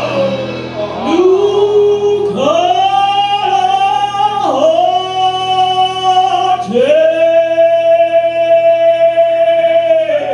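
Live band singing long held notes in two-part harmony, male and female voices sliding up into each of about four sustained notes. A steady low bass note runs underneath.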